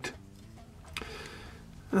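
Quiet handling with a single faint click about a second in, as a thin steel injector blade is handled against a 3D-printed plastic razor head.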